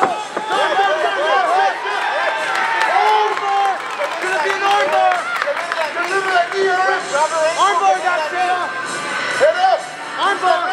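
Several voices shouting over one another, coaches calling instructions, with crowd noise and some cheering.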